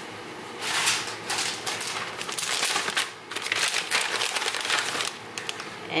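Plastic bag of shredded cheese crinkling and rustling as it is opened and handled. It starts about half a second in, pauses briefly near the middle, and stops about a second before the end.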